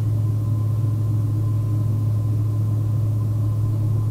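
A steady, deep, low drone with a faint thin high tone above it, holding level without change: the ominous suspense drone of a horror film soundtrack.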